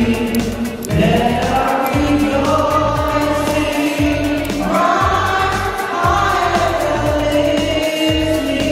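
A woman singing into a microphone over a sound system, slow with long held notes that slide between pitches, over low accompaniment underneath.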